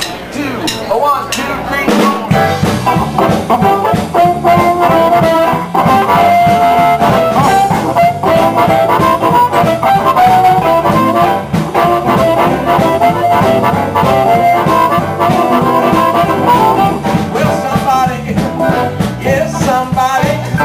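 Live blues band playing an instrumental passage, with a sustained lead melody line over bass and drums; the full band comes in about two seconds in.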